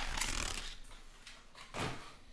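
Trading-card packaging handled on a table: a rustling slide fading over the first half second, then a soft thump near the end.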